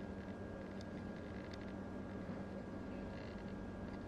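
Quiet steady hum with a few faint high ticks, about one and one-and-a-half seconds in, and a faint brief whir later on, from the stepping (STM) focus motor of a Viltrox 33mm f/1.4 lens as it racks focus.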